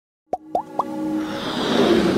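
Electronic intro sting: three quick rising plops about a quarter second apart, then a swell that builds steadily louder.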